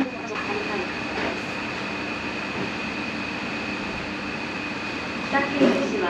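Steady restaurant room noise: a continuous mechanical hum with a thin high whine. Near the end a short burst of voices and clatter.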